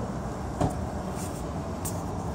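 Steady low vehicle rumble, heard from inside a car, with a single sharp knock just over half a second in.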